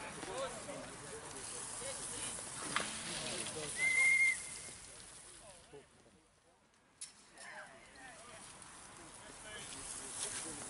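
Spectators' indistinct voices and calls at the trackside as a cycle speedway race gets under way, with a short high whistle-like tone about four seconds in. The sound drops away for about a second and a half after six seconds, then the voices return.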